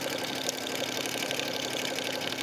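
Sewing machine running steadily, sewing a decorative stitch along a ribbon with a fast, even needle rhythm over a steady motor hum.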